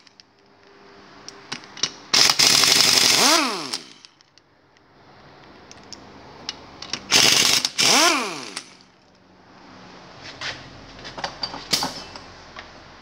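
A power drill fitted with a socket undoes nuts on a small four-stroke quad-bike engine's cylinder head cover. It runs in two bursts of about a second and a half, about two seconds in and again about seven seconds in; each time its pitch climbs as it spins up and falls as it runs down. Small metal clicks come near the end as the loosened nuts are handled.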